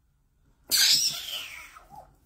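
A man sneezing once, a sudden loud burst about two-thirds of a second in that fades out over about a second.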